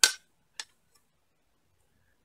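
Makeup items being handled: a sharp click right at the start, then a fainter click a little over half a second later.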